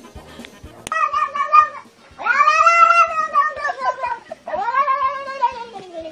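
A domestic cat meowing three times in long, drawn-out yowls. The middle one is the longest and loudest, and the last falls in pitch at its end. Music with a faint steady beat plays underneath.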